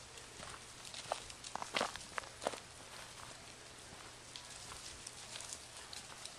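Footsteps and rustling in dry leaf litter, with a close cluster of sharp crackles about one to two and a half seconds in.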